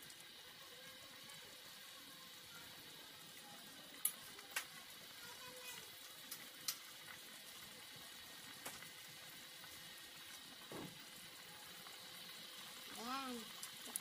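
Pork afritada stew cooking in a metal pot with a faint, steady sizzle. A metal spoon clinks sharply against the pot a few times as the stew is stirred, loudest about four seconds in.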